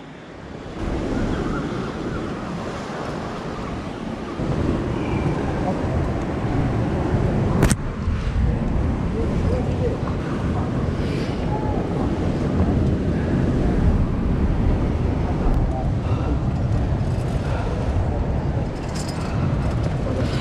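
Wind rumbling and buffeting on the microphone, a steady low roar that grows a little louder about four seconds in. A single sharp click comes about eight seconds in.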